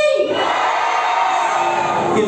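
Music with singing cuts off right at the start, and a crowd cheers and shouts.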